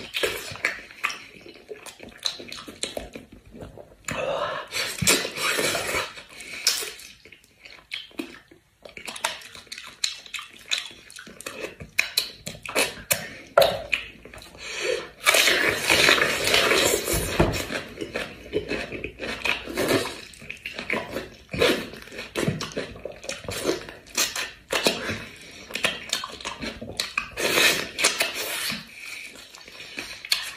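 Close-miked wet chewing, smacking and sucking as meat is gnawed off a sauced sheep's head bone. The clicks and slurps are irregular, with a crisp bite into a raw red onion about halfway through.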